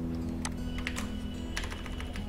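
Computer keys clicking a few times, over soft background music with long held notes.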